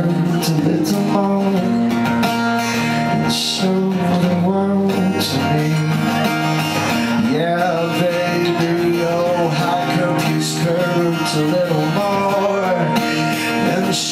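Solo acoustic guitar played live, with a man singing over it into a microphone.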